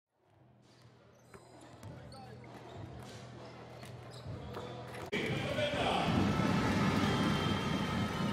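Basketballs bouncing on a hardwood court during warm-up, faint single thuds that fade in. About five seconds in, the sound jumps abruptly to a loud, busy arena: crowd noise and a voice over the loudspeakers.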